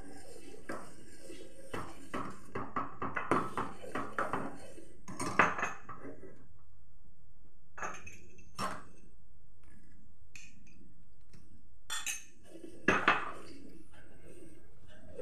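A ladle scraping and knocking against a stainless steel pan while custard is stirred, quick and continuous at first, then slower with a few separate knocks and a louder clatter near the end.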